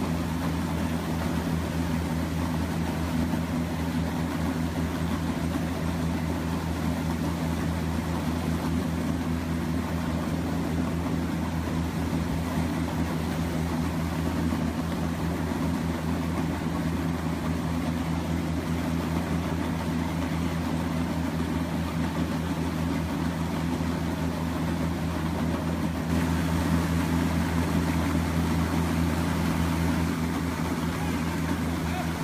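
Plastic film recycling machinery running: a continuous low motor hum over a steady wash of mechanical noise, growing slightly louder near the end.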